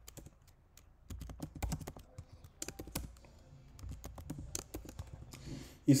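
Typing on a computer keyboard: a run of quick, irregular key clicks as a search word is entered.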